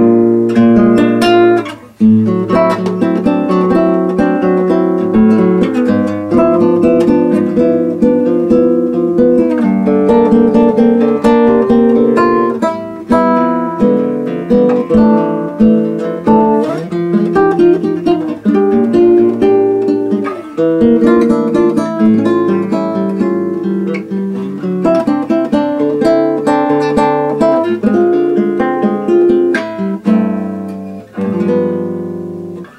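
Nylon-string classical guitar played solo, a slow minor-key piece of plucked notes and chords.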